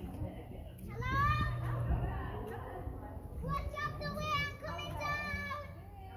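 Children's voices at play: a high rising shout about a second in, then a run of high-pitched calls or squeals later on, with no clear words.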